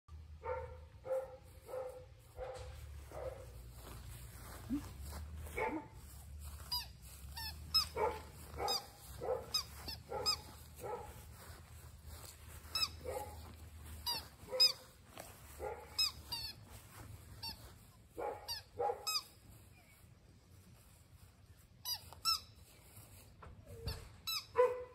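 English Labrador Retriever puppy yipping: short, high yips, about two a second at first, then in scattered runs.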